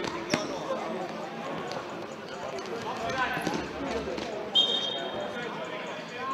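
Spectators talking in a sports hall, with a ball kicked hard on the court just after the start, then a referee's whistle blown once, briefly, a little past halfway through, as a player goes down.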